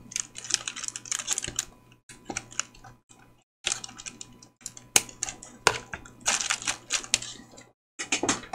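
Plastic sticker packaging crinkling and clicking as it is handled, with scissors snipping through a package. The clicks come irregularly, with a couple of short pauses.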